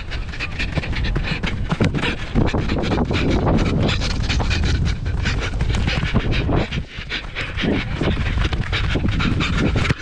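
A footballer running hard with the camera on his body: close, heavy breathing over rapid footfalls on artificial turf, with wind rumble on the microphone.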